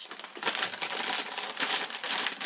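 A plastic chip bag crinkling as its open top is folded over. A dense run of crackles starts about half a second in.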